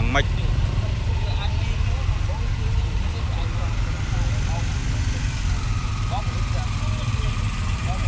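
Background voices of a crowd of bystanders over a steady low rumble of idling vehicle engines in the street.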